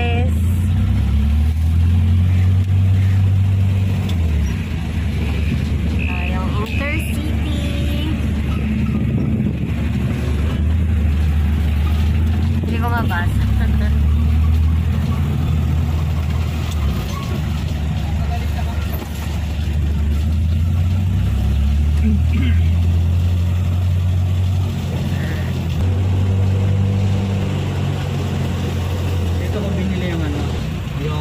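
Engine of a small cab-over truck heard from inside the cab while driving: a steady low drone whose pitch shifts up and down several times as the truck speeds up and slows.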